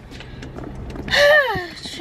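A woman's voiced sigh about a second in, falling steeply in pitch, over a low steady rumble inside a car.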